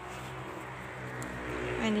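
A motor vehicle running outside: a steady low hum under a hiss, swelling slightly toward the end.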